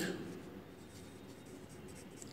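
Pencil faintly scratching on notebook paper as a word is handwritten.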